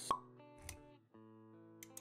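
Sound effects and music for an animated logo intro. A sharp pop comes just after the start and a soft low thump follows about two-thirds of a second in. After that, held musical notes ring on.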